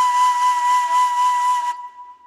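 Background music: a breathy flute holding one long steady note, which fades away near the end.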